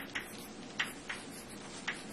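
Chalk clicking and tapping on a blackboard as a structure is drawn: about four sharp, irregularly spaced clicks over faint room hum.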